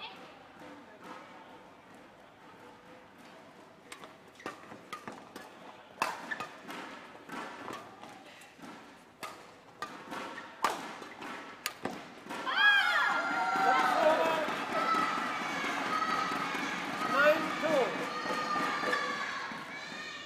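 A fast badminton rally: a string of sharp racket strikes on the shuttlecock and footfalls on the court, each strike a crisp knock, ending about twelve seconds in. Loud shouts and cheering from the hall follow the point.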